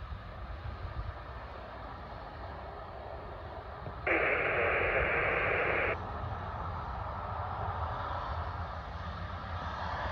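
A burst of airband radio static, about two seconds of hiss from a scanner, that switches on and off abruptly midway. Under it is a low, steady rumble of wind and distant airport noise.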